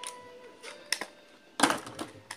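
Plastic clicking and scraping from a handheld toy-drone controller as its battery cover is worked open, with a few separate clicks and the loudest cluster about three quarters of the way through.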